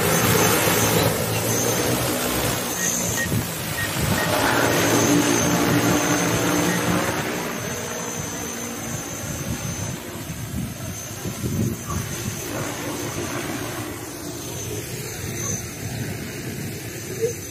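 Multirotor agricultural seeding drone's rotors running at full power as it lifts off, a loud steady rotor noise with a hum and a high whine, easing off after about seven seconds as it flies away over the field.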